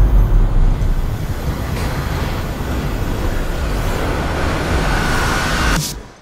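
Sound-design build-up in an electronic show soundtrack over an arena's speakers: a deep bass rumble gives way to a swelling whooshing noise with a faint tone rising out of it. It cuts off suddenly just before the end.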